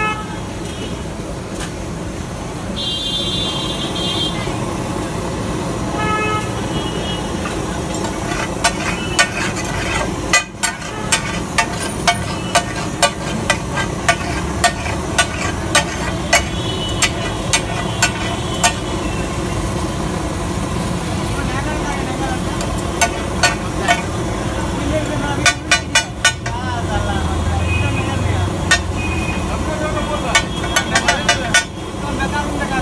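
Flat steel spatula clacking and scraping on a large iron griddle as the cook chops and mashes pav bhaji, a sharp regular clack about twice a second through the middle, then a quick run of clacks later on. Behind it: busy street noise with voices and a few car horn toots early on.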